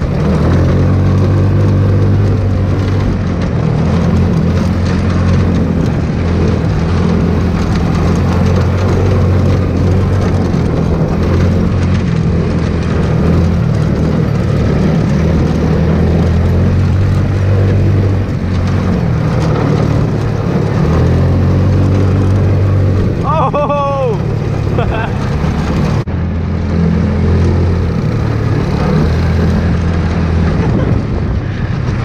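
Hammerhead GTS 150 go-kart's single-cylinder engine running under throttle at speed, its pitch shifting up and down as the throttle changes, heard from the driver's seat.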